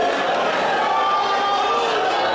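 A church congregation's many voices overlapping in continuous loud praise and prayer, with some drawn-out cries held above the general din.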